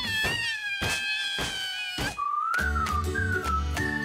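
A cat's long, drawn-out meow for about two seconds, with a few sharp knocks, then a short cartoon music sting.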